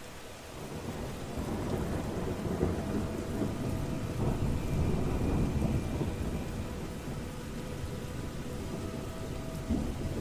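Rolling thunder over steady rain, swelling over the first few seconds and easing off after the middle.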